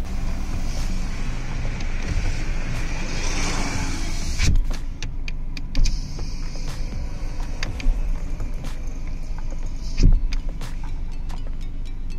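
Hyundai Creta's electric power window motor running the glass down, stopping with a thump about four seconds in, then running it back up and seating it with another thump about ten seconds in.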